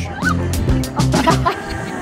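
Women's playful shrieks and squeals in short, high, wavering bursts, over background music.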